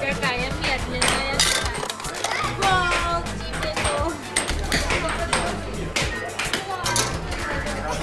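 Background music and children's voices, with sharp clacks scattered through of an air hockey puck striking the mallets and the table's rails.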